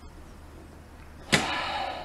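Low room tone, then about a second and a half in a person's sudden pained cry, 'téng' ("it hurts").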